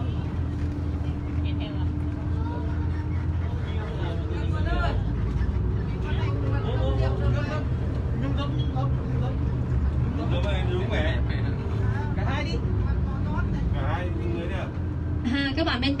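Safari tour bus running as it drives along, a steady low rumble with a faint steady hum over it. Quiet voices of passengers come and go above it.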